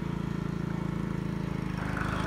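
A small engine runs steadily with an even, low pulsing hum, the kind that drives a pump draining a pond.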